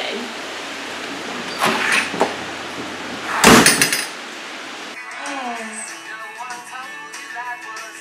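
A front door slammed shut: one loud bang about three and a half seconds in, after a lighter knock or two. About a second later, music with a singing voice begins.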